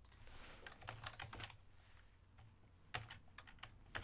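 Computer keyboard keys clicking faintly in short bursts of typing.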